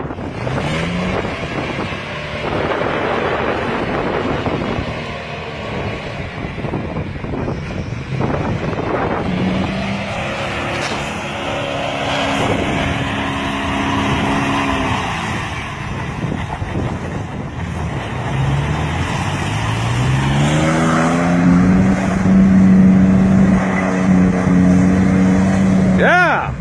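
Off-road jeep's engine revving hard while it drives through deep mud and water. The revs climb several times and are held highest and loudest near the end, over a steady rushing noise.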